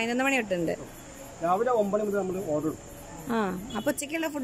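A man speaking in three short phrases with pauses between. A faint steady high-pitched tone sounds throughout.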